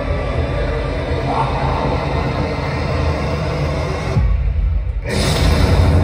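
Horror-movie trailer soundtrack played over loudspeakers: dark, scary music with a heavy low rumble. About four seconds in, the higher sounds cut out for about a second, leaving only the rumble, then come back in full.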